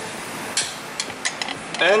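A few light clicks and knocks from the BMW X3 E83's driveshaft and center support bearing as hands work them loose from the underbody, over a steady background hiss.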